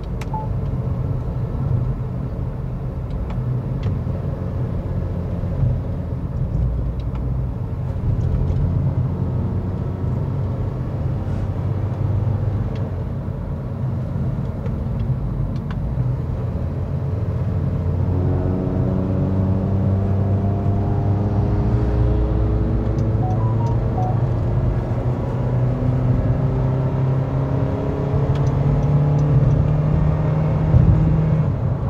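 Steady road and engine rumble inside a car driving on a highway. In the second half, an engine note rises slowly in pitch.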